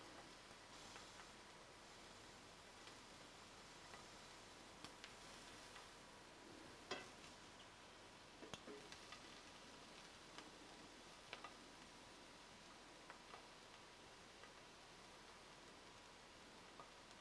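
Near silence: a faint even hiss with a few soft, scattered clicks of metal tongs against the frying langoustine tails and the steel pan.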